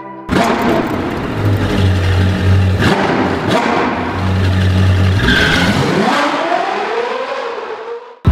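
Sound effect of a sports car engine revving in a logo intro, over music with a deep bass hum. The engine pitch dips and then climbs again near the end.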